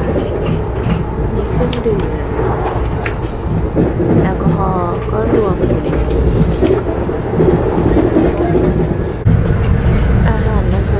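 Steady low running rumble inside the passenger car of a Sapsan high-speed electric train in motion, with faint voices in the carriage. The rumble steps up in level about nine seconds in.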